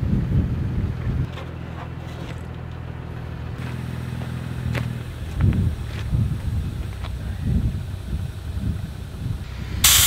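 A vehicle engine idling steadily, fading out about halfway, followed by footsteps on gravel. Just before the end a sudden loud hiss starts: air rushing out of an off-road truck tire through a deflator gauge pressed onto its valve stem.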